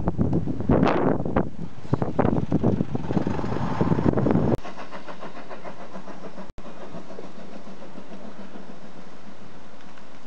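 Wind buffeting the microphone on the open top deck of a moving bus, with the bus engine running underneath in uneven gusts. A little under halfway through it cuts off abruptly, replaced by a steady, even background noise.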